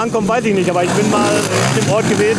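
Motocross bike engines running on the track in the background, under a man talking.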